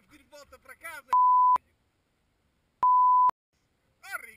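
Two loud beeps of one steady pitch, each about half a second long and about a second and a half apart, starting and stopping abruptly, with the sound cut to dead silence between them: a censor bleep laid over the soundtrack.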